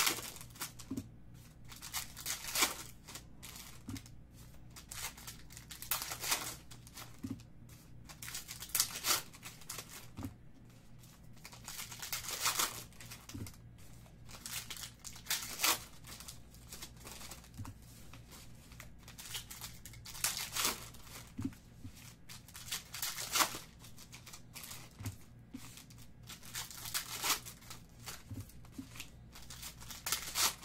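Foil wrappers of Phoenix Football trading-card packs being torn open and crinkled by hand, in repeated bursts of rustling and tearing every few seconds, over a low steady hum.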